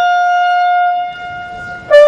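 Brass band music: one long held note that stops about a second in, then after a short, quieter gap a loud new note comes in near the end.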